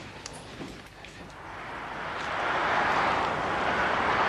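Road traffic noise swelling up over a couple of seconds into a steady rush, the sound of the nearby freeway.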